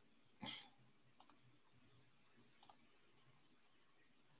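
Near silence: room tone with a short breathy exhale about half a second in, then two faint pairs of sharp clicks, one a little after a second in and one near the three-quarter mark.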